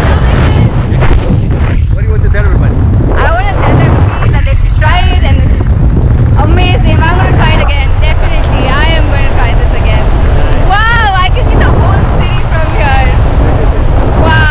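Heavy wind buffeting the camera microphone under an open tandem parachute, a constant low rumble. Over it come voices talking and calling out, with several rising exclamations.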